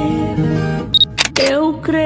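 Gospel song with singing and guitar playing. About a second in comes a short high beep, then a few sharp camera-shutter clicks.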